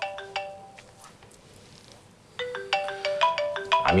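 Mobile phone ringing with a melodic ringtone: a short tune of quick notes that ends about half a second in and plays again from about two and a half seconds in.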